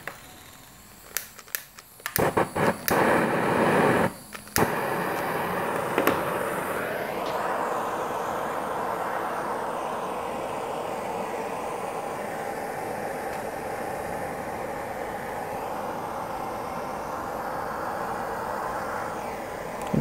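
Handheld propane torch: a few sharp clicks, then the flame catches about two seconds in, sputters on and off for a couple of seconds, and settles into a steady hiss as it scorches burn marks into a pine board.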